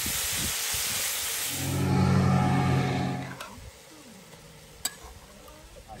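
Chopped onion, capsicum and jalapeños sizzling as they sauté in a cast-iron camp oven on a gas stove, stirred by hand. A low steady hum joins in for about two seconds midway, the loudest part, and the sizzle fades about three and a half seconds in, leaving a single click near the end.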